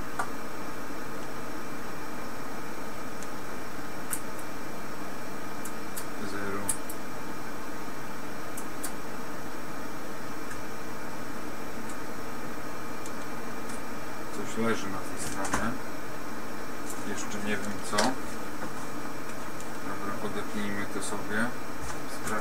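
Steady background hiss and hum with scattered small clicks and knocks as hands work on the metal amplifier chassis, its fuses and its test leads; the clicks bunch together about two-thirds of the way through.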